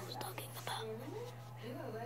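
Soft, whisper-like speech with a steady low hum underneath.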